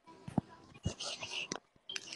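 Faint, low whispered speech with a few small clicks.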